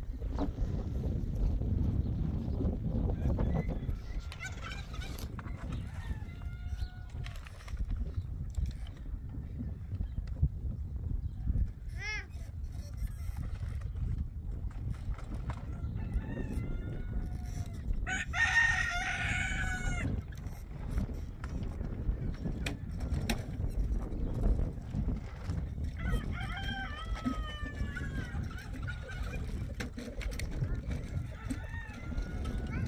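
Rooster crowing: one loud crow about two-thirds of the way in, with shorter chicken calls and clucks before it and near the end, over a steady low rumble.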